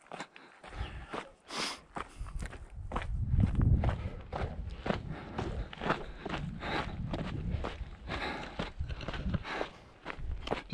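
A runner's footsteps on a dry, rocky dirt trail at a steady running pace, about three steps a second, with a low rumble underneath, loudest about three seconds in.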